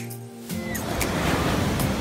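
A held music chord, then about half a second in the rush of ocean surf breaking and washing up the shore comes in loud, with background music still going over it.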